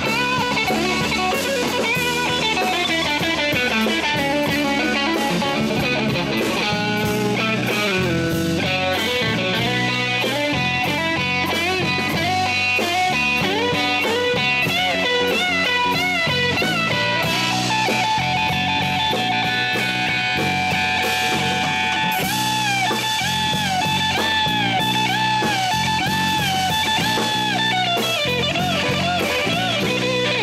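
A live band playing an instrumental blues jam: an electric guitar plays a lead with many bent notes over a second guitar and a drum kit.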